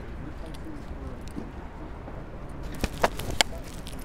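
Steady outdoor background noise with faint distant voices, and a quick cluster of three sharp knocks about three seconds in.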